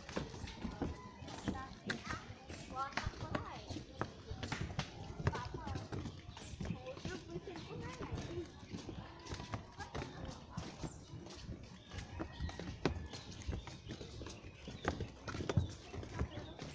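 Footsteps of several people walking on a plank boardwalk: irregular hollow knocks of shoes on the boards. People's voices are talking in the background.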